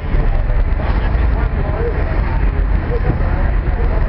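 Steady outdoor street noise: a low rumble under a broad hiss, with faint scattered voices.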